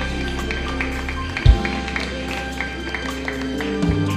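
Church band playing an instrumental break between verses of a gospel song, without singing: held chords and bass with short plucked notes, and one low thump about a second and a half in.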